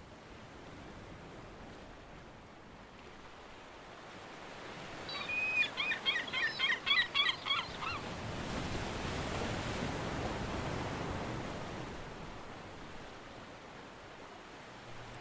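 Seashore ambience: a steady wash of waves with a brief flurry of quick, repeated bird calls about five seconds in, then a wave surging up and fading away.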